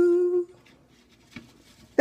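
A lone unaccompanied voice holding the last note of a song at a steady pitch, then fading out about half a second in, leaving a quiet room with one faint click.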